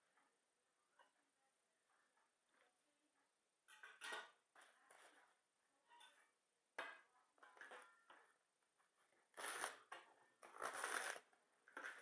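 A few quiet handling rustles, then a mezzaluna's curved steel blade chopping through the stalk end of a head of romaine lettuce onto a plastic cutting board: two crisp crunching cuts about a second apart near the end.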